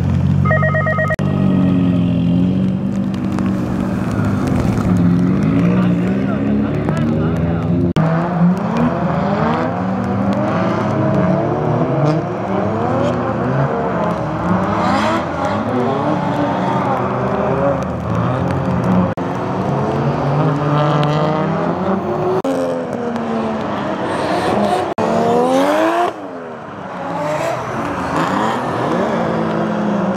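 Drift cars' engines revving hard, their pitch repeatedly swooping up and down as the cars slide around the circuit, with a brief beeping tone about a second in.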